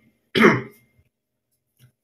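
A man coughs once, a short sudden burst about a third of a second in.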